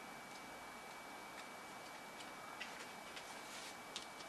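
Faint, irregular light clicks and ticks of paper card stock being handled, coming a little more often in the second half. A faint, steady high-pitched whine runs underneath.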